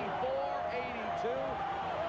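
Arena crowd cheering and shouting, many voices at once, steady and loud, celebrating a basketball win.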